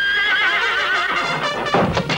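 A horse whinnying in one long wavering call that falls in pitch, over music, followed by a crash about three-quarters of the way through.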